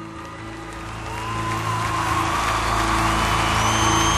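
Live band and piano holding sustained notes while audience applause and cheering swell from about a second in, with whoops rising over the music.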